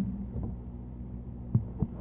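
Steady low hum with a few soft, dull thumps, one about half a second in and two near the end. No piano is being played.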